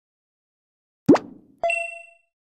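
Sound effects for an animated subscribe end card: a short pop that rises in pitch about a second in, then a bright chime-like ding with several ringing tones about half a second later, fading out.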